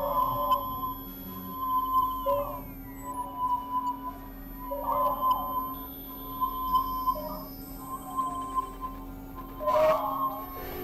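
Electronic synthesizer drone: a steady high sine-like tone over a steady low hum, with a swelling, warbling burst returning about every two and a half seconds.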